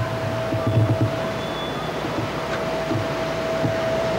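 City street ambience picked up by an old camcorder's microphone: a steady wash of traffic and street noise, with a constant thin whine running underneath it.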